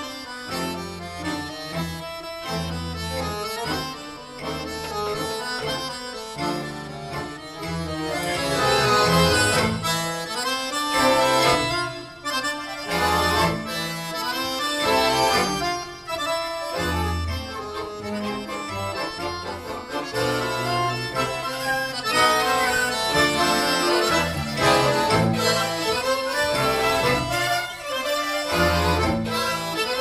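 Chromatic button accordion playing a lead melody over a large ensemble of accordions, strings and bass, growing louder about eight seconds in and again in the last third.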